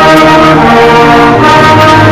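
Beginner class concert band of brass and saxophones playing a simple march, loud, holding sustained chords that change about one and a half seconds in. Many of the players have played their instruments for only two weeks.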